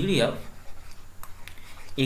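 A pen scratching and tapping on a tablet surface while handwriting, with a few light clicks in the middle of the stretch. A man's voice trails off right at the start.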